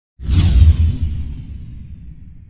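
Logo-reveal whoosh sound effect with a deep low rumble beneath it. It starts suddenly just after the beginning, is loudest in the first half second and then fades away.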